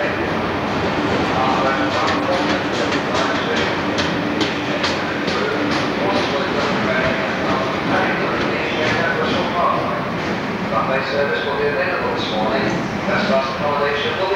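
Passenger train's coaches rolling out of the station past the platform, the wheels clicking over rail joints at about three clicks a second for several seconds, under a steady rumble.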